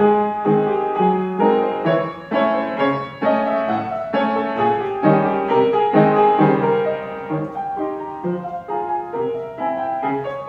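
Wooden upright piano played solo: a piece with a steady stream of struck notes and chords, several a second, each ringing briefly into the next.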